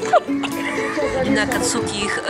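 Background music: a melody of held notes stepping from one pitch to the next, with a brief wavering high-pitched voice-like sound over it about halfway through.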